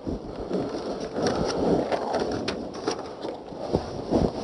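Handheld whiteboard eraser rubbing back and forth across a whiteboard, wiping off marker writing, with a few knocks of the eraser against the board.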